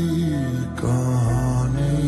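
Slowed-down, reverb-heavy Bollywood ballad: a male voice holds a long sung note that slides down in pitch, then starts a new held note partway through, over soft sustained backing music.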